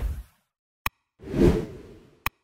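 Animated like-and-subscribe sound effects. A whoosh fades out at the start, a single short mouse click comes just under a second in, then a second whoosh swells and dies away.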